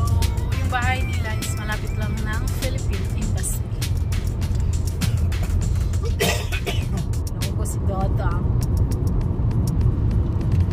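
A song with a singing voice and a beat, over a steady low rumble like a car driving.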